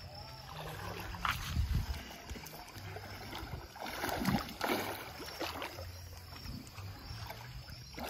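A swimmer's kicks and strokes splashing at the surface of calm river water, with a few sharper splashes about a second in and around four to five seconds in.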